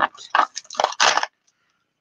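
Handling noise from a wooden bead necklace being pulled out of a bag and worked loose in the hands: several short rustles and clicks in quick succession over about the first second.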